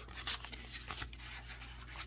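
Printed game cards sliding and rubbing against each other as a hand of them is sorted and fanned: faint, scattered scratchy rustles over a steady low hum.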